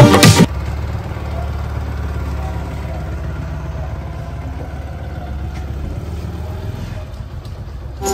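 Music cutting off about half a second in, then the steady low rumble of a two-wheeler's engine riding slowly along a street.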